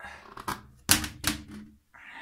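Plastic toilet lid and seat clattering as they are handled, with a few sharp clacks; the loudest comes about a second in.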